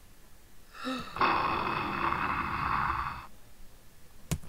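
A rocket whoosh sound effect: a steady, hissing "shhh" that starts about a second in, lasts about two seconds and cuts off suddenly, just after a short voiced sound.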